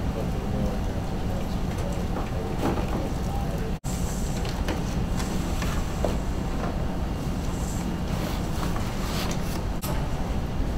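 Steady low room noise in a meeting room, with faint, indistinct murmured voices. The sound cuts out completely for an instant about four seconds in.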